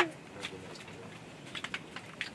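Scattered light clicks and taps of small objects being handled, with a sharp click right at the start and a quick run of clicks near the end.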